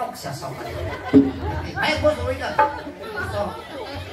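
Indistinct talking and chatter from more than one voice, with a single short knock about a second in.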